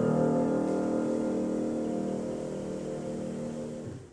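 Grand piano: a chord struck at the start rings on and slowly fades, then cuts off abruptly just before the end.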